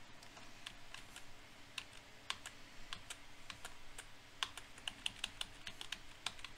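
Computer keyboard keys clicking irregularly, a few light presses a second.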